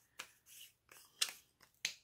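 A few short, sharp clicks and taps as small plastic makeup containers are handled: one faint click near the start and two clearer ones in the second half.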